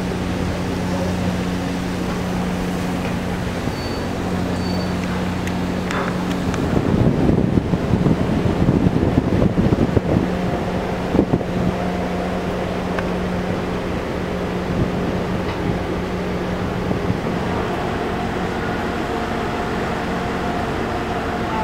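A ferry's engines running with a steady low drone and hum. In the middle there is a louder, rougher rush of noise for about three seconds, after which the drone settles back.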